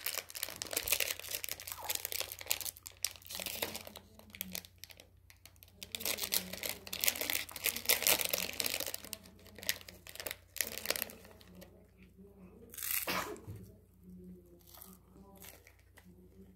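A plastic snack packet crinkling and being torn open by hand, dense and continuous for about the first ten seconds, then a few scattered crinkles with one sharper one near the end.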